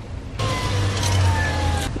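Car driving, heard from inside the cabin: a low engine hum and road noise with a faint falling whine. It starts suddenly about half a second in and cuts off near the end.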